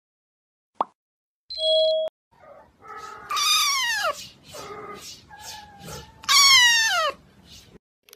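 A kitten meowing: two loud, drawn-out meows that fall in pitch, a few seconds apart, with softer mews in between. Before them, in the first two seconds, a click and a brief steady tone.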